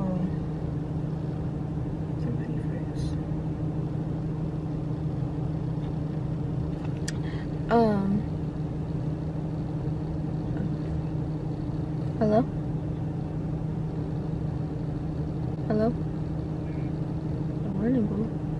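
Car idling while it warms up in the cold, heard from inside the cabin as a steady low hum. A few short pitched sounds rise above it about 8, 12 and 16 seconds in, the loudest at the first.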